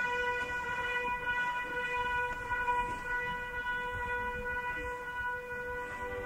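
Opera orchestra holding one long note, steady in pitch.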